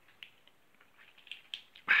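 Quiet handling of a white plastic tube: a few faint, light clicks and ticks, then a man's voice starts near the end.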